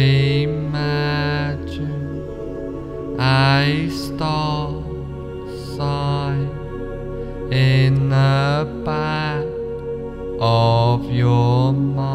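Meditation background music: a steady low drone with chant-like vocal tones that swell and fade, mostly in pairs, about every three seconds.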